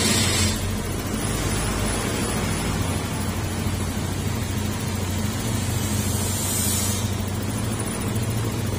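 Honda Beat FI scooter's small single-cylinder four-stroke engine idling steadily just after starting, with a new throttle position sensor fitted to cure its stalling.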